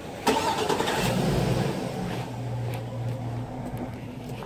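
A car engine starting close by: a sudden burst of noise, then a steady low running note from about a second in that fades near the end.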